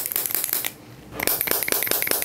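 Crackly rustling with dense small clicks from hands pressing and rubbing over a socked foot. It comes in two stretches, with a brief lull a little past the middle.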